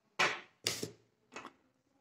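Handling noise as a phone and a plastic wall charger are picked up and moved over a glass tabletop: three short knocks and clatters, the last one faintest.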